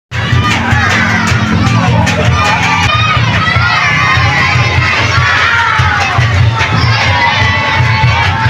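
A large crowd of young people shouting and chanting together, many voices overlapping, over a steady low pulsing beat.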